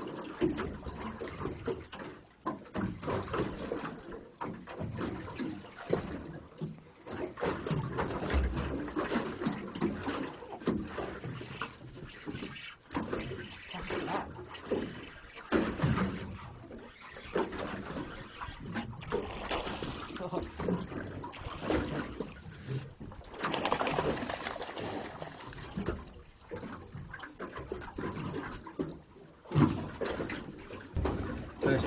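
Sea water lapping and splashing against the hull of a small drifting boat, coming in irregular slaps.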